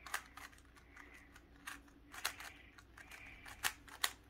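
GAN 356 M magnetic 3x3 speed cube being turned by hand: irregular light plastic clicks, about one or two a second, as its layers are turned.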